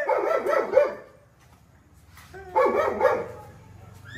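A dog vocalising in two short bursts of whining yips, the first at the start and the second about two and a half seconds in, with a quiet pause between.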